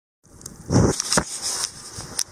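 Handling noise from a handheld camera being picked up and moved: irregular rustling with a few sharp bumps, the loudest a little under a second in.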